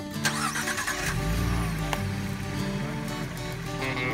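A Ford Mustang's engine starting and revving briefly about a second in, heard under background music.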